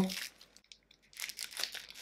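Clear plastic packaging crinkling as it is handled and pulled open, a run of short scratchy rustles starting about a second in.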